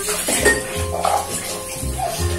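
Dishes and cutlery clinking in a kitchen sink as they are washed, under background music with a repeating bass line.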